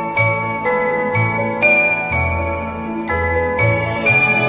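Orchestral Christmas music: an instrumental carol arrangement led by bright struck, bell-like notes, about two a second, over a bass line.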